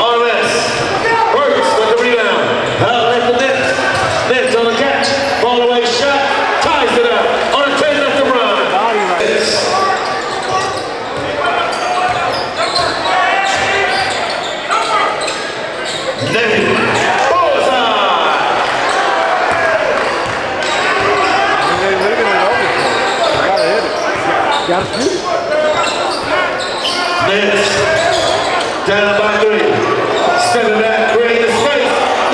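Basketball game sound in a large gym: a ball bouncing on the hardwood court amid indistinct voices of players and spectators, with the room's echo.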